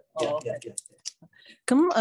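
Speech, broken by a short pause about a second in that holds a few faint clicks, then speech again near the end.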